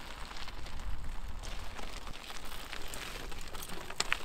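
Mountain bike ridden over a rocky gravel trail: tyres crunching on loose stones, with scattered clicks and knocks from the bike and a low rumble underneath.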